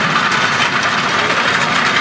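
Fordson Major E27N half-track tractor's engine running steadily as the tractor drives slowly past.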